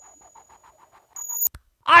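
Coin-toss sound effect: a high, steady ringing with a rapid flutter of about eight beats a second that fades away. It swells again briefly and cuts off abruptly, followed by a single click as the coin comes to rest.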